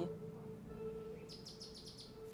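Faint bird chirps a little past the middle, over a soft, steady low hum.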